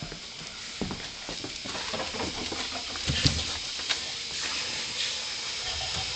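Rubbing and scraping noise from a harness-mounted GoPro on a small dog, as fur brushes against the camera while the dog moves. Scattered clicks and knocks run through it, the loudest a little after three seconds in.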